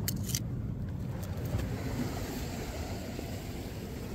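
Steady low rumble of surf and wind along a rocky ocean shore, with two or three quick small clicks in the first half second.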